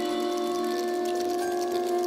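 Contemporary music for a 23-musician ensemble and electronics: a held chord of several steady, ringing tones that sustains without a break, with a faint high flicker above it.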